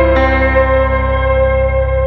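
Instrumental music: a sustained chord struck just after the start rings on and slowly fades.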